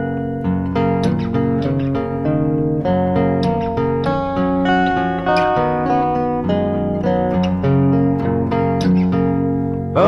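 Instrumental break of a late-1960s folk-pop song: guitars picking a running melody over held chords, with no singing.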